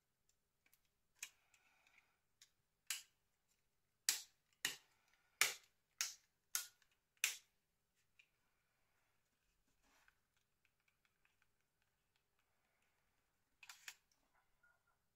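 Sharp plastic clicks from the parts of a Nokia N80 phone's casing being handled and pressed together: a few scattered clicks, then six in a row about half a second apart, then faint ticks and one more click near the end.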